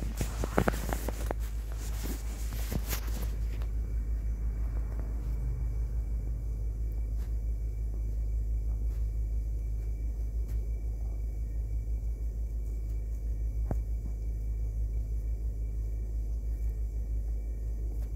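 A steady low rumble, with a few scrapes and knocks in the first three seconds and a single click about fourteen seconds in.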